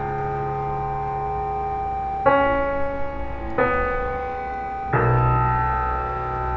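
Slow, sparse keyboard music in sustained chords, piano-like. A new chord is struck about two, three and a half and five seconds in, and each is held and fades slowly.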